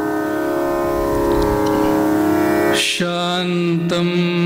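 Carnatic music: a steady drone with violin, then about three seconds in a male singer starts one long held note, opening a sung Sanskrit verse.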